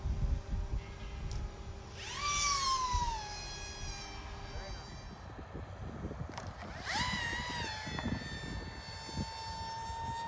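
Electric pusher motor and propeller of an SAB Avio Tortuga RC plane whining. About two seconds in it runs up briefly and drops back. Near the middle it spools up again and holds a steady high whine, its pitch creeping upward as the plane is launched and climbs. Wind rumbles on the microphone in the first half.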